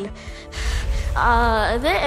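A short, sharp intake of breath close to the microphone about half a second in, then a child's voice resuming speech, over steady background music.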